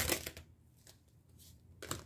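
A tarot deck being handled: a quick cluster of card clicks and rustles at the start, then a quiet stretch, then one sharp snap near the end as a card is pulled from the deck and flipped over.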